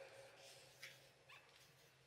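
Near silence on a video-call line, with two brief faint sounds about a second in.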